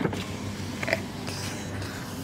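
Chevy pickup truck running as it moves slowly, heard from inside the cab with the window open, with a sharp click right at the start.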